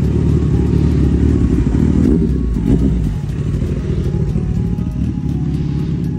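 Suzuki Hayabusa's inline-four engine running at low road speed as the bike rides past, loudest about two and a half seconds in and a little quieter as it moves away.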